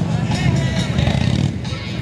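A Harley-Davidson Road King's V-twin engine idling steadily, mixed with music from a loudspeaker and people talking.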